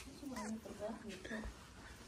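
Faint voice sounds with sliding pitch, no clear words, for about the first second and a half, then low background noise.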